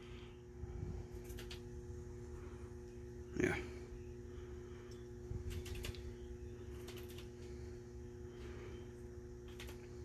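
Faint, scattered small metallic clicks and ticks as steel vanes are handled and fitted into the rotor slots of a power steering pump. A steady low hum runs underneath.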